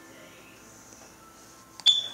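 Faint background music, then near the end a sharp plastic click with a brief high ring as the small bottle of gel primer is handled at its cap.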